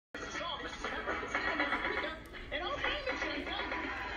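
Blue's Clues toy karaoke machine playing a sing-along song through its small speaker: music with a voice singing and talking over it.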